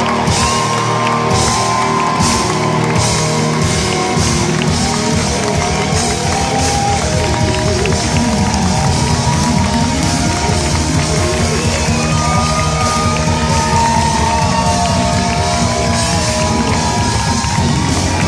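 Rock band playing live and loud through a concert PA, an electric guitar playing long, bending lead notes over drums and bass.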